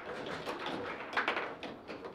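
Foosball table in play: a quick run of sharp clacks and knocks as the ball strikes the plastic players and the rods are shifted and banged, densest about a second in.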